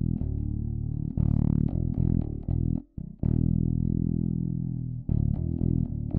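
Custom fretless extended-range electric bass with active EMG pickups, played solo through an amplifier: low sustained notes, one note bending in pitch about a second in, a long held note, then a quicker run of short notes near the end.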